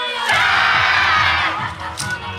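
A group of voices shouts together for about a second over yosakoi dance music with a fast drum beat: a dance team's unison shout in the middle of the routine.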